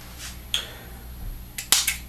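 Small plastic clicks from a pen-style dry herb vaporizer being handled: a light click about half a second in, then a sharper quick double click near the end as its top cap is popped off.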